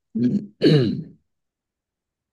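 A man clearing his throat: two short voiced bursts within the first second or so.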